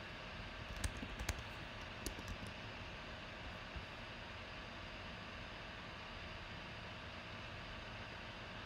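Steady low hiss of background noise, with a few scattered light clicks in the first two and a half seconds and one faint click a little later.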